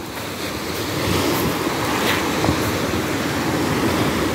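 Small sea waves breaking and washing up a sandy beach: a steady wash of surf.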